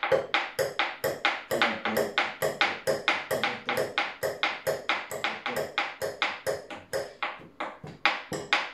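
A spoon clinking against a small bowl in quick repeated strikes, about three a second, each with a short ring, as the contents are beaten and mixed.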